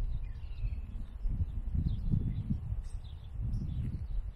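Outdoor street ambience: an uneven low rumble on the microphone, with a couple of faint bird chirps about half a second in.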